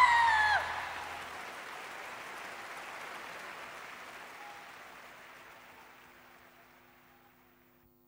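Large concert crowd applauding and cheering, fading away steadily to near silence. A held vocal note and the band's low end stop within the first second.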